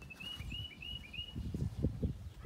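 A small bird chirping a quick run of about five short high notes in the first second and a half, over an irregular low rumble.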